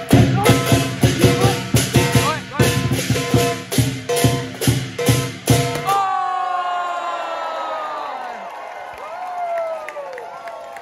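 Lion dance music with rapid, evenly paced drum strikes over ringing metal tones, which stops suddenly about six seconds in. After that the crowd cheers, with long falling whoops.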